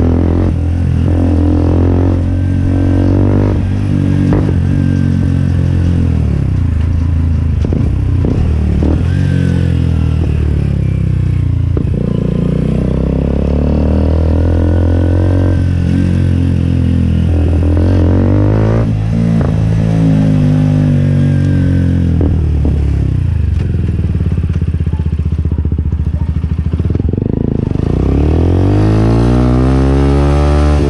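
Benelli RNX 125 motorcycle engine running through a replica Akrapovic aftermarket exhaust while ridden, the revs rising and dropping again and again, then climbing once more near the end.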